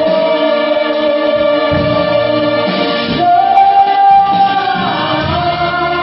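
Concert band of wind instruments playing a slow ballad in sustained chords, with a male vocalist singing into a microphone. About halfway through a louder held note steps up in pitch and lasts about a second.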